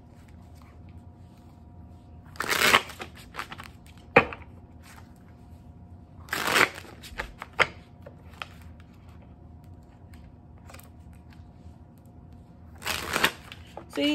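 A deck of tarot cards being shuffled by hand: three short rushes of riffling card noise about four seconds apart, with a few sharp single taps between them.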